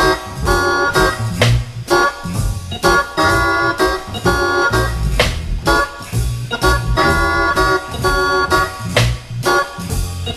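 Swing-era jazz led by a Hammond organ, playing short repeated block chords in a bouncy rhythm over drums.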